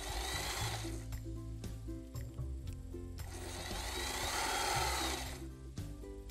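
Electric sewing machine running in two spells over background music: a short run of about a second at the start, then a longer run of two to three seconds in the second half.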